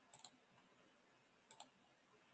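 Faint computer mouse clicks in near silence: a quick cluster of clicks just after the start and a double click about a second and a half in, as chart timeframes are being switched.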